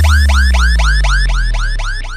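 Electronic DJ remix break: a siren-like synth chirp that rises quickly and repeats about six times a second, over a deep humming bass that slowly drops in pitch and fades toward the end.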